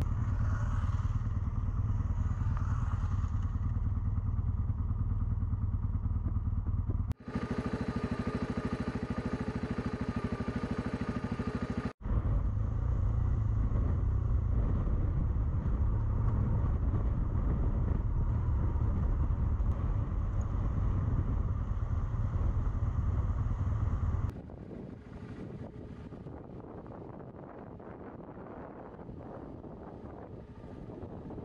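Adventure motorcycle engine running steadily as the bike rides a rough dirt track, heard from the bike's own onboard camera. The sound cuts off abruptly about seven seconds in and again about five seconds later. A little after twenty seconds in it drops to a much quieter engine and wind sound.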